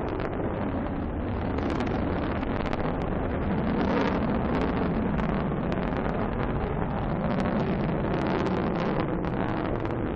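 Delta rocket's engine and strap-on solid boosters rumbling in flight after liftoff: a steady, dense rumble with crackling all through, swelling a little about four seconds in.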